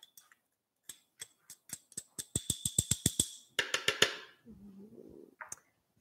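Sweetener being tapped and shaken from its container into a food processor bowl: a run of quick taps and clicks that come faster and denser in the middle, then a short rustle.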